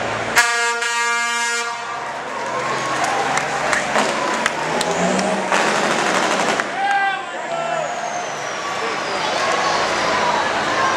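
Semi truck's air horn blowing one steady blast, a little over a second long, just after the start, over crowd chatter.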